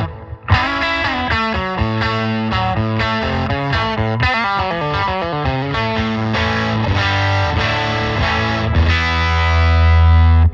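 Electric guitar played through a Blackstar St. James 50-watt valve amp head. After a brief gap, a struck chord about half a second in opens a run of changing notes and chords, and a low chord is held near the end.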